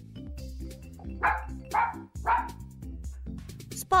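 Cartoon dog barking three times, about half a second apart, over light background music.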